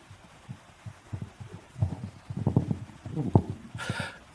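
Handheld microphone handling noise: soft, irregular low thumps and bumps as the microphone is picked up and brought to the mouth, growing busier in the second half.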